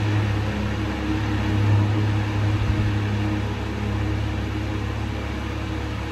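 A steady low mechanical hum with a faint hiss.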